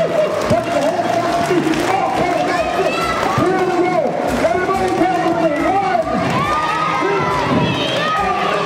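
A large crowd of children shouting and cheering together, many high voices overlapping with some long held calls.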